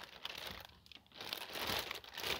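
Clear plastic bag crinkling as a hand handles a bagged charging cable, in two spells with a brief pause about a second in.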